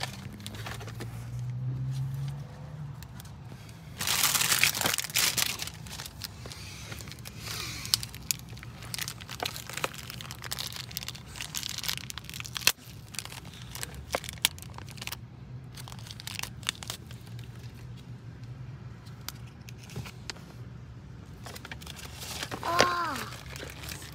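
A small plastic toy packet being crinkled and pulled open by hand, in irregular crackles with a loud burst of crinkling about four seconds in, over a steady low hum. A short voice sound comes near the end.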